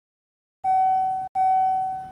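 Elevator hall-lantern chime: two dings of the same pitch in quick succession, each ringing and fading, the second dying away more slowly. Two strokes is the usual lantern signal for a car going down.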